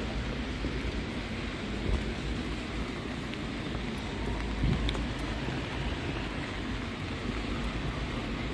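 Steady hiss of rain and wet-street ambience, with a low rumble underneath and a couple of soft bumps.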